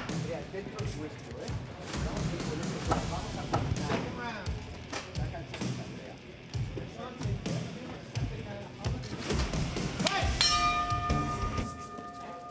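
Strikes landing in an MMA clinch exchange: repeated dull thuds of knees and punches, with voices and music underneath. A steady held tone starts near the end.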